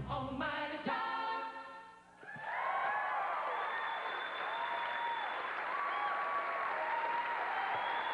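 A vocal group ends a song on a held sung chord that fades out about two seconds in. The audience then breaks into steady applause and cheering.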